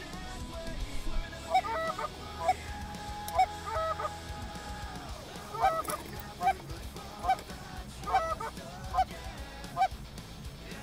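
Kwakman goose call blown in a string of short honks and two-note clucks, about one a second, with a short pause midway, calling to incoming geese.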